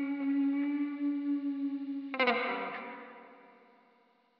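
Guitar with a chorus effect holding a sustained note. About two seconds in, a final chord is strummed and rings out, fading away to silence.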